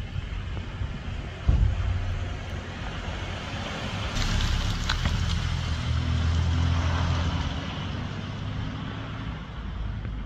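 Cupra Ateca's 2.0 TSI turbocharged four-cylinder engine and exhaust as the SUV drives past on the street, the engine note swelling through the middle and then easing off. A sharp thump about a second and a half in.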